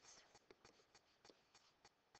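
Faint ticks and scratches of a stylus writing a word on a tablet surface, a quick irregular run of small strokes.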